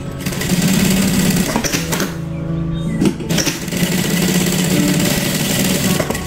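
JUKI 9800-D3 industrial sewing machine running at speed, stitching through cotton fabric, easing off briefly a couple of seconds in.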